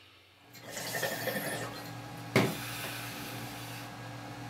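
Water bubbling in a glass bong as smoke is drawn through it, starting about half a second in, with one sharp click a little past the middle.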